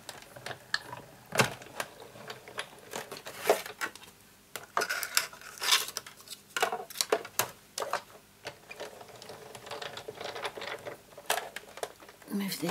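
Sizzix Big Shot die-cutting machine being hand-cranked, its plastic cutting plates and a die running through the rollers, with irregular clicks, knocks and scrapes of plastic as the plates are handled.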